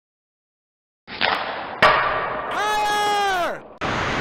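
Short intro sound effect: a muffled, noisy stretch with two sharp knocks, then a held pitched tone with many overtones that slides down in pitch and cuts off, followed near the end by the start of rink sound.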